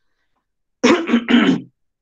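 A man clearing his throat: a short voiced burst of about three quick pushes about a second in, with dead silence around it.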